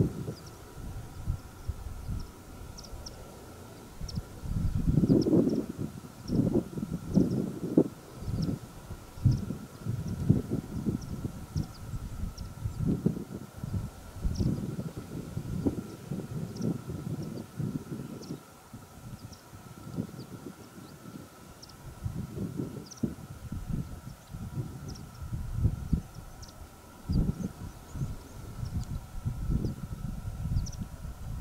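Gusty wind buffeting the microphone in irregular low rumbles that rise and fall, with faint, short high bird chirps scattered throughout.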